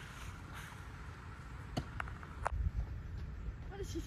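Wind rumbling on the microphone, with three short sharp knocks in the middle.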